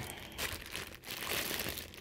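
Clear plastic wrapping crinkling irregularly as plastic-bagged bottles are picked up and handled.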